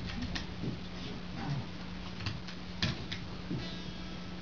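Scattered clicks and taps from an electric guitar rig being handled, over a steady amplifier hum.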